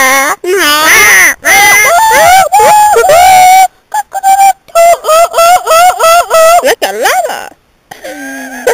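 A girl's loud, wordless vocal noises right at the microphone: long wavering cries for the first few seconds, then a quick string of short repeated hoots, about three a second.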